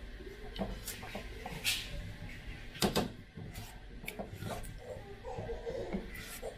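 A plastic ladle stirring thick custard batter in an aluminium pot, with soft scraping and scattered light knocks of the ladle against the pot; the sharpest knock falls about halfway through.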